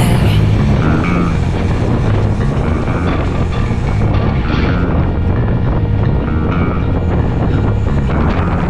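Wind rumbling steadily on a chest-mounted action camera's microphone while a bicycle is ridden at speed, with tyre noise on the road surface; a music track cuts off about half a second in.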